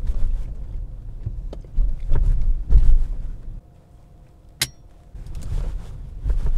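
A car driving slowly, heard from inside the cabin: a low road rumble with a few heavy thumps near the middle, then a quieter stretch broken by one sharp click.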